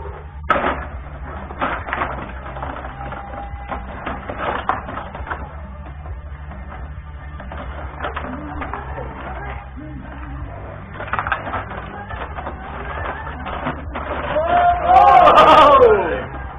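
Clicking and knocking of play on a Benej rod hockey table: metal rods sliding and turning, player figures and the puck clacking, over background music. A loud shout near the end.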